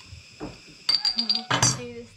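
Glass beer bottle being opened by hand: a quick run of small metallic clicks and clinks about a second in as the cap is worked, then a louder sharp burst as it comes off.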